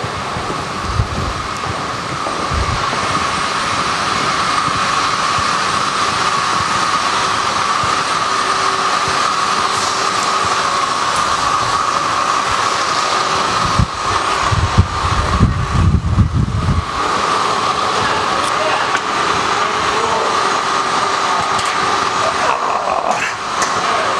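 Steady machinery noise of a food-processing plant: a hiss with a constant whine running through it. Low thumps from footsteps and handling come and go, with a cluster about two-thirds of the way in.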